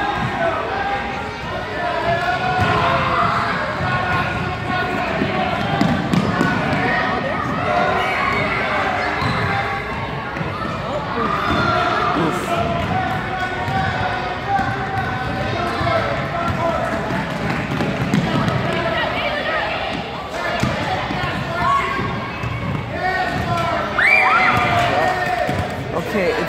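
Basketballs bouncing on a hardwood gym floor amid steady chatter and calls of children and adults, echoing in the gym. A short high rising squeal near the end is the loudest moment.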